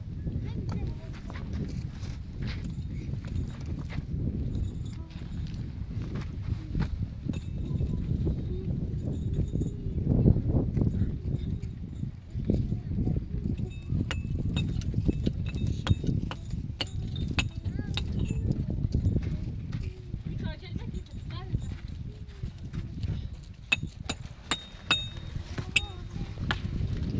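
A small hand pick chipping at a packed-earth cave wall: irregular knocks and scrapes as dirt is loosened, over a steady low rumble.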